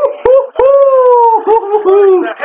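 A man's excited drawn-out shout, high and slowly falling in pitch, with short yelps before and after it: a hyped reaction to a basketball play.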